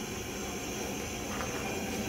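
Steady low hiss of background noise with no distinct events.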